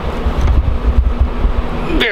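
Wind buffeting the camera microphone outdoors: an uneven low rumble that rises and falls in gusts, with a faint steady hum underneath.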